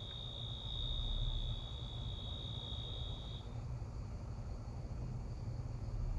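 A steady high-pitched tone that stops suddenly about three and a half seconds in, over a low steady rumble.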